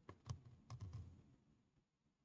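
A few faint clicks and taps in quick succession during the first second or so, with some dull low thud in them.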